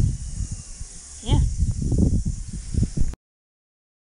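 Handling noise from a hand-held camera close to the microphone: low knocks and rubbing over a steady high hiss, with a brief voice sound just after a second in. The sound cuts off suddenly about three seconds in.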